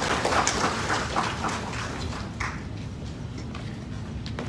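Scattered applause from an audience, thinning out after about two seconds into a few stray claps.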